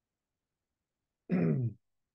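Near silence, broken a little over a second in by one short vocal sound from a man, about half a second long with a slightly falling pitch, such as a throat clear or a wordless 'mm'.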